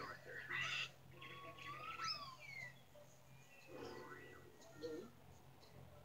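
Faint cartoon soundtrack from a television: high whistle-like tones glide up and then down about two seconds in, among short chirps and brief bursts of sound, over a steady low hum.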